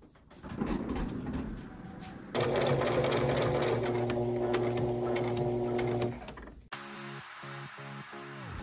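Scissors snipping through fabric, then an electric sewing machine stitching fabric for about four seconds with a steady motor hum and rapid needle clicking, stopping abruptly. Electronic music starts near the end.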